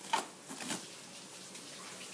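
Two soft thumps about half a second apart as socked feet stamp at an inflated balloon on a carpeted floor; the balloon does not pop.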